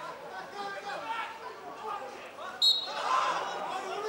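Players shouting on a football pitch, cut through about two-thirds of the way in by one short, sharp blast of a referee's whistle, the loudest sound, stopping play for a foul; the shouting swells after the whistle.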